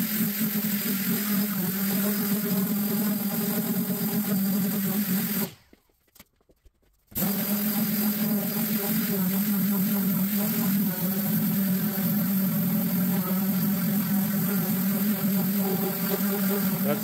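Dual-action sander running steadily against a bare sheet-steel truck fender, sanding out file marks. The sound cuts out completely for about a second and a half just past the middle, then carries on.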